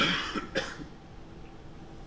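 A man coughing twice in quick succession: a loud cough right at the start and a shorter one about half a second later.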